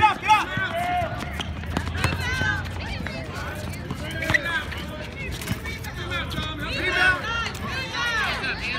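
Shouting voices of players and coaches on an outdoor basketball court, with a few sharp knocks from the basketball about one, two and four seconds in.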